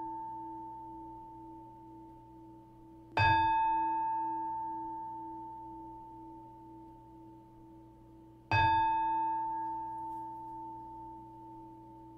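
A singing bowl-type meditation bell struck twice, about three seconds in and again about eight and a half seconds in, each strike ringing out and slowly fading, with the ring of an earlier strike dying away at the start. The strikes close the Zen dharma talk.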